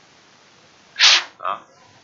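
A single short, sharp burst of breath noise from a person about a second in, followed at once by a brief spoken word.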